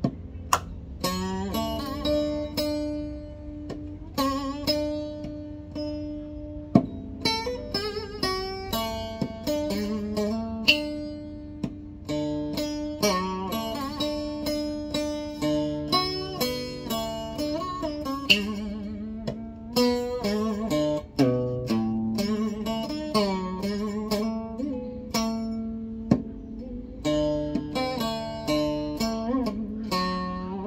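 Solo acoustic steel-string guitar playing a Vietnamese traditional melody, plucked note by note over lower bass notes, with slides and wavering vibrato on held notes.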